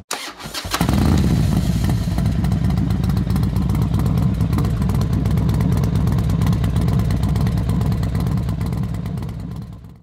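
A motorcycle engine starting: a few brief clicks of cranking, then it catches just under a second in and runs steadily until it fades out near the end.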